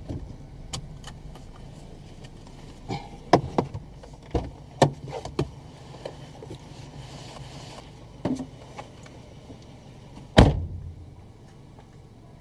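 Clicks and knocks from inside a stopped car as a passenger gets out, then a car door shut with one loud thump near the end, over the car's low engine hum.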